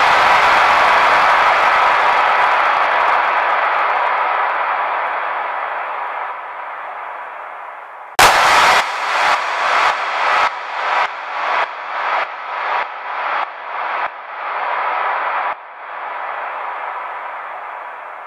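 Drum-sample audio played back through the Battery 4 plug-in. A long, noisy sustained sample fades over about eight seconds. A sharp hit then starts a rhythmic run of about a dozen pulses, roughly two a second, each one dipping and swelling back, before a sustained tail that fades out.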